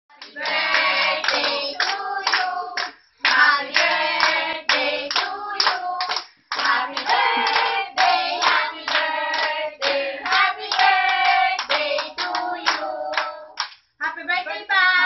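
A group of women and children singing together while clapping along, with two brief breaks between phrases.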